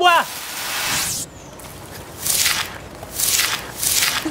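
Hissing sound effects: a long hiss through the first second, then short sharp hisses about a second apart.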